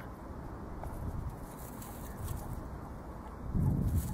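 Steady low rumble of wind on the microphone with faint rustling, swelling near the end.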